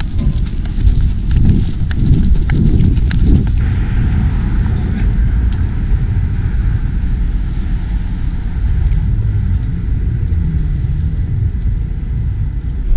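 Wind buffeting the camera microphone as a loud low rumble. For the first three and a half seconds it is mixed with a quick run of clicks and taps; then it settles into a steadier rumble.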